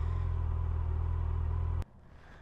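Yamaha FJR1300's inline-four engine running steadily with a low, even rumble, which cuts off suddenly near the end.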